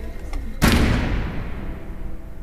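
A single sudden deep boom-like impact about half a second in, fading away over about a second: a cinematic hit sound effect laid over background music at a cut.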